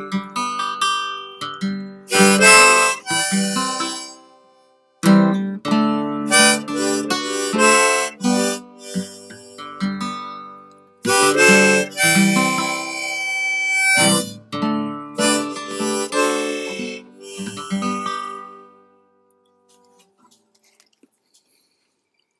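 Harmonica playing over strummed acoustic guitar as the closing instrumental of a folk song. The playing stops a few seconds before the end and the last notes die away.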